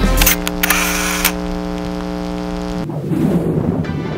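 Background rock music breaks off and an editing transition effect follows: a few sharp clicks with a hiss, then a steady buzzing tone that cuts off sharply about three seconds in, leaving a soft hiss.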